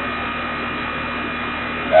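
Air-conditioning condensing unit running in cooling mode, its compressor and condenser fan making a steady hum with several steady tones in it.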